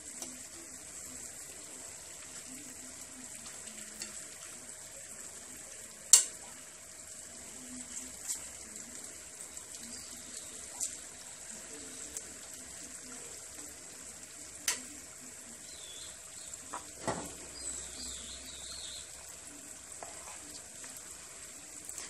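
Almond-filled briouat pastries frying in a pan of oil: a steady, quiet sizzle, with a few sharp clicks, the loudest about six seconds in.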